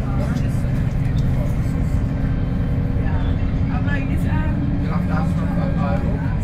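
Interior of a VDL SB200 single-deck bus on the move: the diesel engine and drivetrain run steadily under the saloon floor, the engine note shifting and rising slightly in the second half. Faint voices talk over it.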